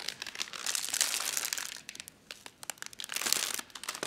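Thin clear plastic protective film being peeled off a computer screen, crinkling and crackling. It comes in two spells, the first about half a second in and the second near three seconds.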